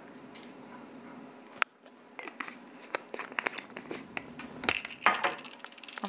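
Spice jar handled while seasoning is added: one sharp click about one and a half seconds in, then a run of small irregular clicks and crinkles.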